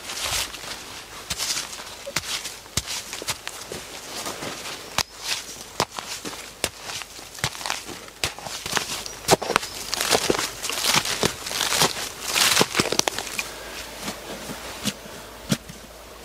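Digging by hand into wet, sandy stream-bank soil: irregular scraping and crunching strokes with many sharp little clicks of sand and grit.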